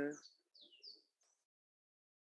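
The end of a spoken "um", then a few faint, short falling chirps of garbled audio as a remote participant's video-call connection breaks up. The sound cuts out to dead silence about a second in.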